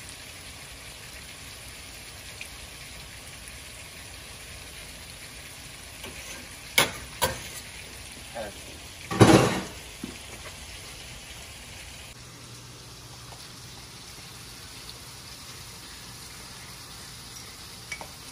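Corn kernels frying in butter in a skillet, a steady low sizzle. A couple of sharp clicks come about seven seconds in, and a louder knock about nine seconds in.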